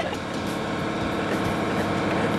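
Steady, even mechanical noise from an amusement-park ride that the riders are seated in, with no distinct knocks or changes.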